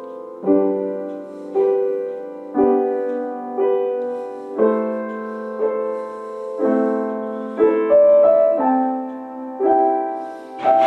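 Upright piano played in a slow improvisation, a chord struck about once a second. Each chord rings on into the next, the notes held and blurred together by heavy use of the sustain pedal.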